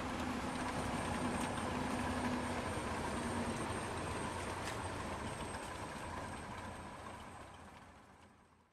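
Light aircraft piston engine running at low taxi power, heard inside the cockpit as a steady drone with a faint high whine, fading out near the end.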